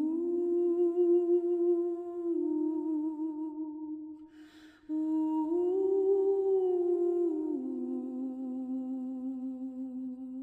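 A single voice humming a slow melody in long held notes, with a quick breath about four and a half seconds in.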